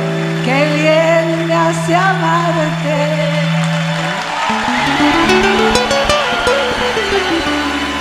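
Live song accompanied by two acoustic guitars, one steel-string and one nylon-string classical, with a voice holding wavering notes in the first half. About four seconds in, a guitar run climbs step by step and then falls back down.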